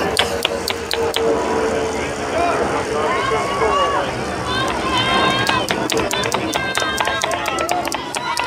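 Trackside spectators shouting and cheering on a bike race sprint, many voices overlapping. Over the last three seconds there is a rapid run of sharp clicks.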